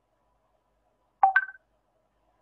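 A short two-note electronic notification chime, a lower tone followed at once by a higher one, a little over a second in.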